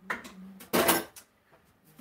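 A short clatter of dishware or cutlery being handled in a kitchen, about a second in.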